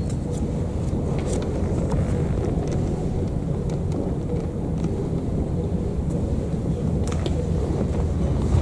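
Steady low rumble with faint, irregular clicks, typical of a handheld camera's microphone while it is carried slowly through a room.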